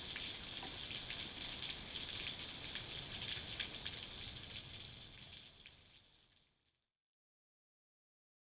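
Heavy rain falling in a storm: a steady hiss with scattered drop ticks. It fades out over a couple of seconds near the end and cuts to silence.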